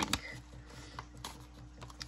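Laminated plastic cards being handled, with a few light clicks of long acrylic nails tapping against the plastic.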